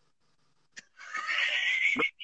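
A person's high, breathy squeal, rising in pitch over about a second, with a brief click just before it.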